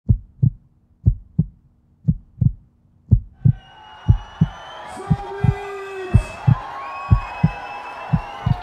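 Heartbeat sound effect: low double thumps, lub-dub, about once a second. From about halfway in, a wash of crowd noise with held musical tones swells in underneath the beat.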